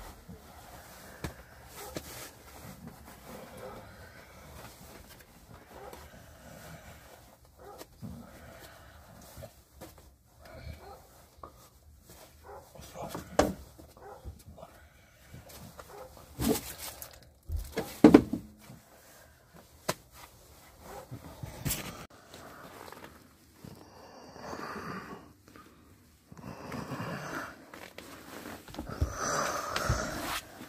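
Scattered knocks and clunks of hand work on the interior of a GAZ Sobol van's cab, the loudest in the middle stretch.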